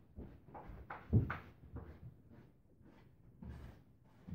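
Irregular muffled thumps and knocks of someone moving about the house out of sight, likely footsteps and doors. The loudest knock comes about a second in.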